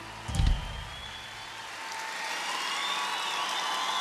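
Audience applause and cheering building up right after the song ends, with faint whoops or whistles above it. A single loud, low thump comes about half a second in.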